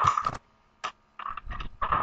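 Computer keyboard typing: irregular clusters of key strikes, a short burst at the start, a single stroke in the middle and a longer run near the end.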